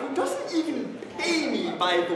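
Only speech: an actor's voice, speaking and vocalising with sliding pitch. No other sound stands out.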